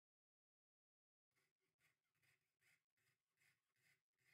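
Faint back-and-forth rasping of a hand tool on a small metal piece, about two and a half strokes a second, starting about a second in.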